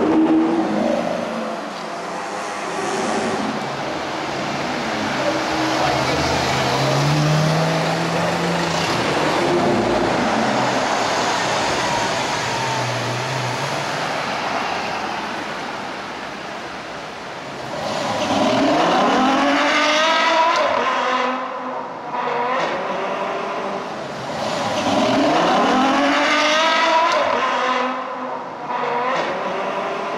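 High-performance car engines accelerating and passing on a city street over steady traffic noise. In the second half come two spells of hard revving, the engine note climbing and falling several times in quick succession in each.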